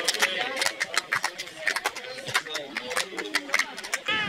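Voices calling and shouting on a football pitch during play, over a run of many sharp, irregular clicks.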